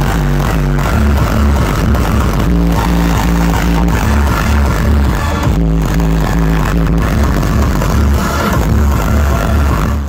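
Hardstyle dance music played very loud over a large sound system, with a heavy repeating kick and bass pattern.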